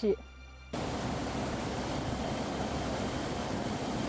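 A fast mountain stream rushing over rocks: a steady rush of white water that cuts in suddenly just under a second in.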